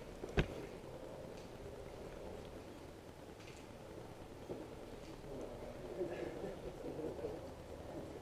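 A single sharp click about half a second in, then a quiet, even background with faint indistinct sounds.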